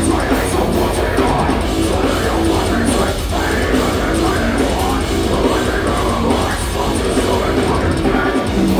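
Heavy metal band playing live and loud, with distorted guitars, bass and a pounding drum kit.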